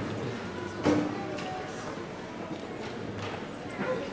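Low murmur of voices chatting in a large hall, with a few scattered sharp knocks; the loudest knock comes about a second in.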